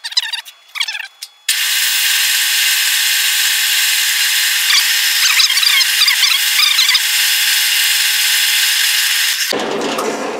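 A few short squeaks as a drill-press chuck is tightened. Then, about a second and a half in, the drill press starts and its twist bit cuts into metal: a loud, steady whir with squealing in the middle. It cuts off suddenly just before the end.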